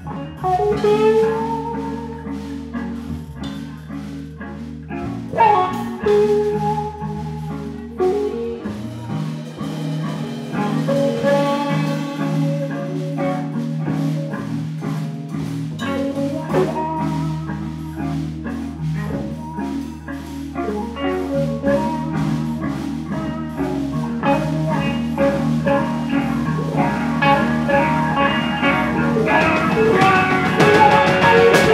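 A live rock band playing an instrumental passage: electric bass, two electric guitars and a drum kit, with the lead guitar bending notes early on. The playing grows louder toward the end.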